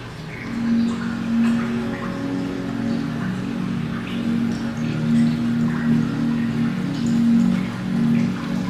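Aquarium background music of slow, held low notes, with water dripping into the tank in scattered small drops.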